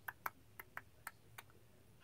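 Faint, light clicks and taps of art supplies being handled while a colour is picked out: about six sharp ticks over the first second and a half, then quiet.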